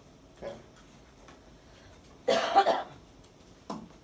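A person coughs once, loudly, about two and a half seconds in, with a shorter, fainter sound near the end.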